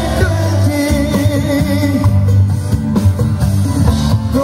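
Live band playing a song with a singer's lead vocal over guitars, bass and keyboard, heard from within the crowd.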